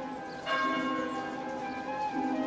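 A large bell in a wooden bell turret, a mill bell, ringing. It is struck about half a second in and hums on with many overtones, and the next stroke comes just after the end.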